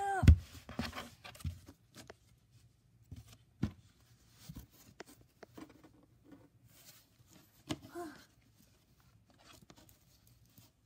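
Handling noise of plush toys and a cardboard box: a heavy thump just after the start, then scattered taps, knocks and rustles. A short wordless vocal sound comes right at the start and another about eight seconds in.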